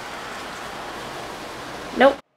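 Steady, even hiss of room noise, with no tone, rhythm or distinct events in it.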